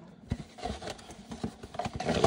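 Light, scattered taps and clicks of hands handling a cardboard box and card packs.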